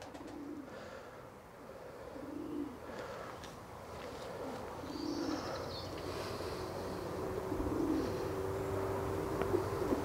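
Racing pigeons cooing: a series of short low coos, one every second or two, with a longer drawn-out coo near the end.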